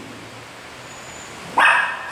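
Small dog giving one sharp, high-pitched bark about one and a half seconds in.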